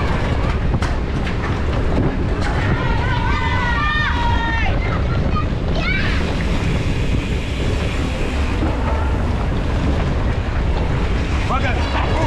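Wind rushing over the microphone of a camera mounted on a moving mountain bike, with a steady low rumble of tyres rolling over grass and dirt. Voices call out a few times over it.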